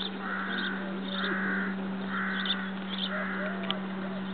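A bird giving four harsh, cawing calls about a second apart, over short high chirps and a steady low hum.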